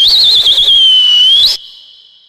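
A whistle sounding one loud, high note for about a second and a half. The note wavers quickly at first, settles, then rises just before it cuts off sharply, leaving a faint fading tone.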